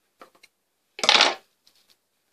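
A pair of metal scissors set down on the table with one brief, loud clatter about a second in, after a few light handling clicks.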